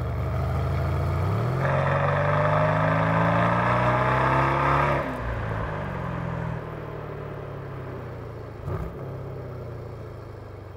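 Mercedes-AMG C63 S twin-turbo V8 with Akrapovič exhaust, in sport mode, pulling hard. About a second and a half in it gets much louder, and its pitch climbs steadily for about three seconds. Then it cuts off sharply as the throttle is lifted, falls back to a quieter steady running note, and gives a brief thump near the end.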